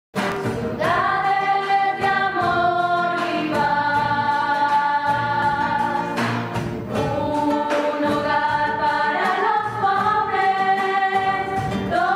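Choir singing a slow piece in long held notes that change every second or two, starting abruptly at the very beginning.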